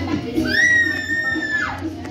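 Background music with a steady beat, over which a child gives one long high-pitched squeal lasting about a second, rising at the start and sliding down in pitch at the end.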